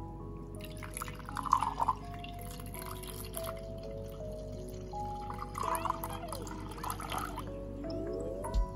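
Liquid poured into a cut-glass tumbler with a spoon in it, in two pours, over light background music.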